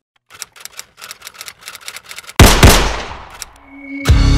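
Sound-effect sting: rapid typewriter-like clacking for about two seconds, then two loud gunshots a quarter second apart that ring out and fade.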